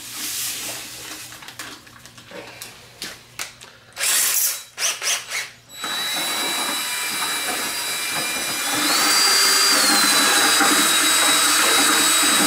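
Rustling and knocking as a packet is emptied into a plastic bucket, then from about six seconds a cordless drill with a mixing rod stirring a bucket of fertilizer solution, running steadily with a high whine. About nine seconds in it gets louder and its pitch rises briefly before settling back.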